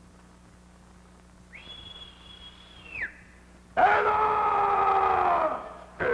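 A man making comic vocal sound effects: a thin, high whistle-like tone held for about a second and a half, then after a short gap a loud sustained cry for about two seconds that sags in pitch as it dies away.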